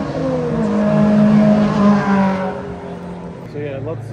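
A track car's engine running hard as it goes by, its note dipping slightly as it arrives, then held. It is loudest about a second or two in and fades away after that.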